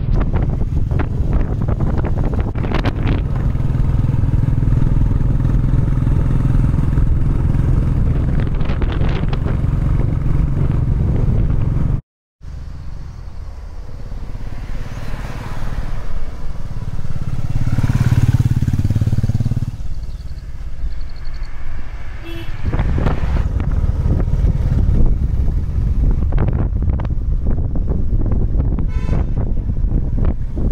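Royal Enfield Classic 350's single-cylinder engine running steadily while riding. Near the middle it approaches, is loudest as it passes and fades away, then runs steadily again near the end.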